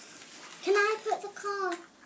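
Only speech: a child's voice says a few words, starting about half a second in and lasting about a second, in a small room.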